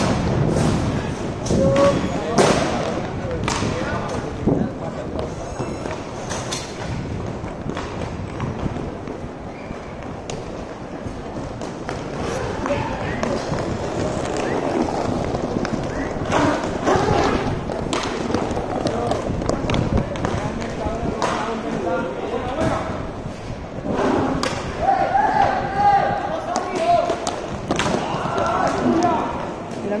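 Inline hockey play on a tiled rink: repeated sharp clacks and thuds from sticks, puck and boards, with players calling out indistinctly, loudest in the second half.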